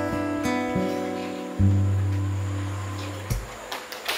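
Acoustic guitar playing the closing notes of a slow song: a last chord is struck about one and a half seconds in and left to ring and fade, then damped shortly before the end.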